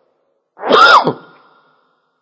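A person sneezing once, a short loud burst about half a second in, with a pitch that rises and then falls.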